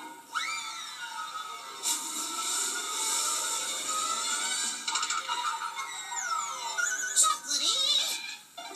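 TV commercial soundtrack played back through a computer's speaker: upbeat jingle music with cartoon sound effects, a rising whistle-like sweep near the start, a hissing wash in the middle, and falling whistles followed by sharp bursts near the end.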